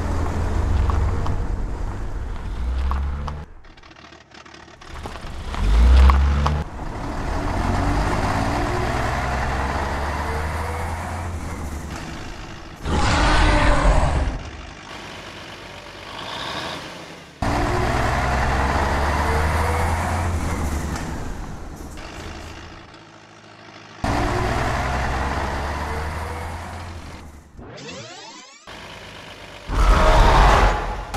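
Dubbed-in truck engine sound effects, running and revving in several separate clips with abrupt cuts between them, and a few louder short bursts.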